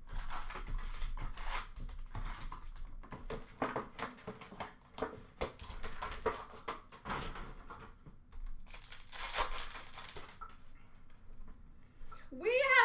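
Upper Deck hockey card pack wrappers crinkling and tearing as packs are ripped open by hand, in irregular crackling bursts, loudest about nine seconds in, with cards handled between.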